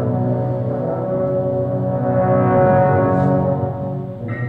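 A full brass band playing long held chords in the low and middle brass, swelling to its loudest just past the middle and easing off near the end.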